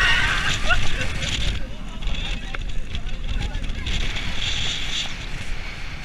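Roller coaster train running along its steel track, with a steady low rumble and wind rushing past the onboard camera, and riders shouting and yelling over it. The noise drops near the end as the ride winds down.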